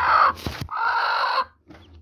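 Broody white Aseel hen on her hatching eggs giving two harsh, drawn-out squawks as a hand reaches under her, with a short knock between them about half a second in. She is defending the nest and chicks.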